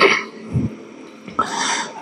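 A man's throat noises and breathing close to a handheld microphone, between chanted recitation and speech: a short low grunt about half a second in, then a breathy rasp near the end.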